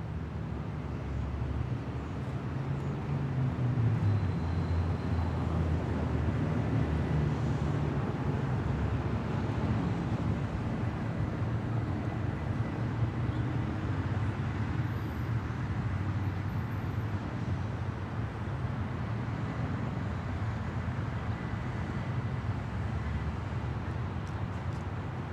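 A steady low rumble of vehicle traffic, swelling over the first few seconds and then holding.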